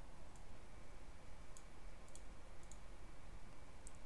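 A handful of faint computer mouse clicks, spaced irregularly over low, steady background room noise.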